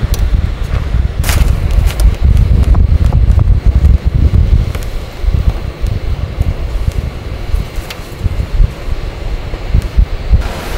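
Wind buffeting the microphone: a heavy, uneven low rumble that rises and falls throughout. A few light clicks and knocks come through it, the clearest about a second in.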